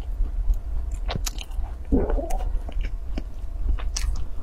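Close-miked chewing of a soft, crumbly Chinese mooncake, with scattered small wet mouth clicks and a brief fuller mouth sound about two seconds in, over a steady low hum.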